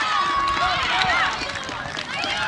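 Young boys' high voices shouting and calling out over one another, cheering a goal just scored.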